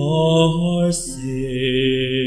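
A male cantor singing a verse of the responsorial psalm in a slow, chant-like line of long held notes, moving to a lower note about a second in.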